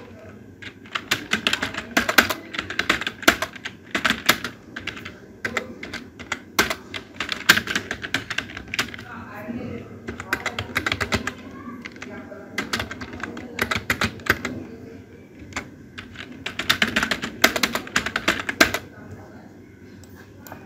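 Computer keyboard typing in runs of rapid keystrokes, with short pauses between the runs.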